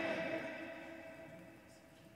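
The echoing tail of a man's drawn-out, shouted "Amen" in a reverberant sanctuary, holding one pitch as it fades away and dying out about halfway through.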